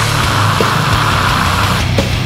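Live death metal: heavily distorted guitars and bass hold a dense, steady wall of sound over a low held bass note. The thick upper part of the sound cuts off near the end.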